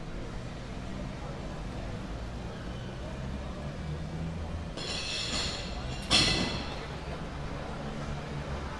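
Street ambience: voices from crowded café terraces over a low, steady traffic rumble. About five seconds in comes a brief high-pitched sound, then a sudden, sharp, loud one that dies away within about half a second.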